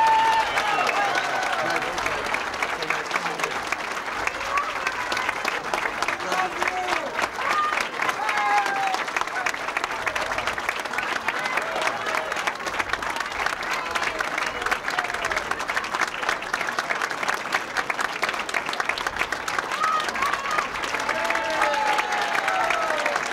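Large crowd applauding steadily and without break, with voices calling out over the clapping, most noticeably at the start and again near the end.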